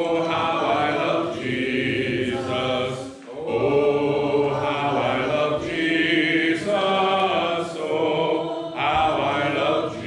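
Slow sung chant or hymn: long held notes in phrases a few seconds long, with a brief break about three seconds in and another near the end.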